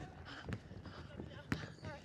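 Footsteps and shuffling on a hardwood basketball court, with two sharp knocks about half a second and a second and a half in, under faint background voices.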